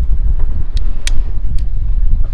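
Strong wind buffeting the microphone with a loud, steady low rumble. Three sharp clicks from a long-necked grill lighter's igniter cut through it, about a second apart and then quicker.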